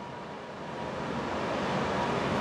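Soft, steady hiss of indoor room noise, growing a little louder after about half a second.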